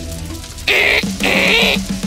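A squeaky, high-pitched cartoon voice crying out in three short bursts, starting under a second in, as a held music chord fades away.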